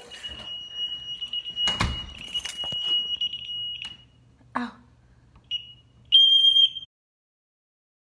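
House security alarm sounding a steady, shrill high-pitched tone, set off because the alarm was armed when the house was entered. There is a thump about two seconds in, short beeps later, and a loud burst of the tone near the end that cuts off abruptly into silence.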